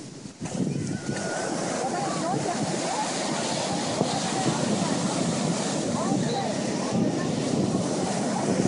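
Ocean surf breaking and washing up a sandy beach, a steady rush of water with wind on the microphone.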